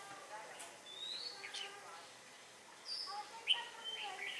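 Red-whiskered bulbul calling: short, clear whistled notes, one rising about a second in and a quick cluster of notes near the end.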